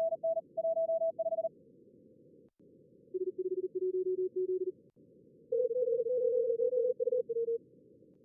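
Simulated Morse code (CW) contest signals, fast keyed tones at several pitches: a higher-pitched one at the start, then lower-pitched callers from about three seconds in, with two stations overlapping at slightly different pitches later on. Under them runs steady hiss from the simulated narrow receiver filter.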